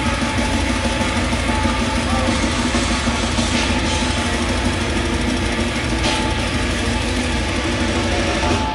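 Heavy metal band playing live and loud: heavily distorted guitar chugging a sustained low chord over pounding drums, with cymbal crashes about three and a half and six seconds in.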